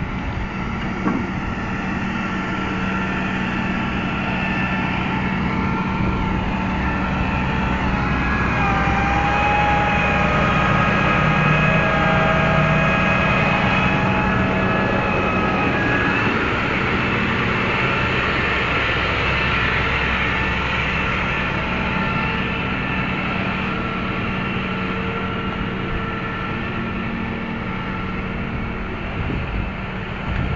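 Flatbed tow truck's engine running steadily with its hydraulics working as the bed lowers a disabled car. A whine of several tones comes in about eight seconds in and drops away around sixteen seconds.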